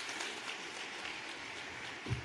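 Audience applauding: a dense patter of many hands clapping, fading slightly toward the end.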